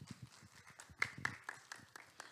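Faint footsteps of a person walking across the room floor, a quick run of light taps about four a second in the second half.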